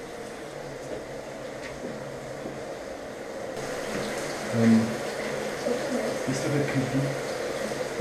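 Water running from a tap in a tiled bathroom, a steady rush that gets louder and brighter about halfway through.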